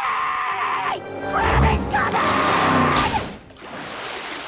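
Cartoon soundtrack: music under a character's drawn-out shout in the first second. Then a loud low rumble with a hiss over it follows for about two seconds before fading.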